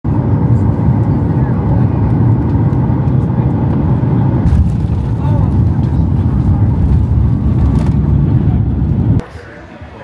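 Jet airliner rolling along the runway, heard from inside the cabin as a loud, steady low rumble of engines and wheels. About nine seconds in it cuts off abruptly to much quieter airport-terminal ambience.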